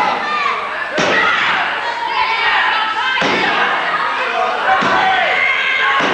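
Three sharp thuds on a wrestling ring, each about a second and a half to two seconds apart, as bodies hit the canvas, under continuous shouting voices from the crowd in a hall.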